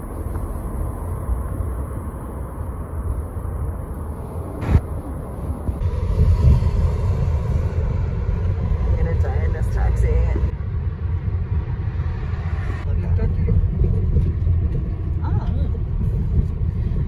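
Steady low rumble of road and engine noise heard from inside a moving car, with a single sharp click about five seconds in.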